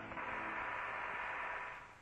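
Steady hiss of an open Apollo air-to-ground radio channel, with a faint steady tone in it. It fades away near the end.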